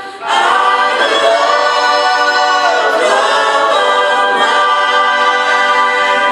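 Live music: male and female voices singing together in sustained harmony, after a brief break at the very start.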